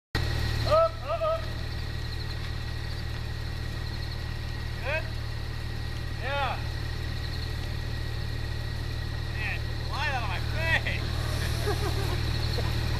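A vehicle engine idling steadily as a low hum, with a few short, distant voices calling out.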